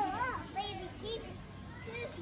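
Children's voices talking and calling out in short, high-pitched bits of unclear speech.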